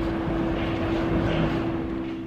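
Steady outdoor city rumble, a rushing noise like distant traffic or an aircraft overhead, swelling a little in the middle, with one held low tone underneath.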